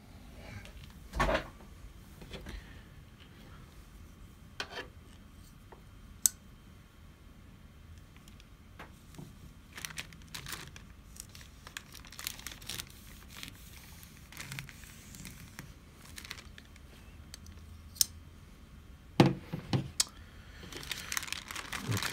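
Plastic courier satchel rustling and crinkling as it is handled and opened on a desk, with scattered clicks and knocks. A knock about a second in is the loudest, and the crinkling builds near the end.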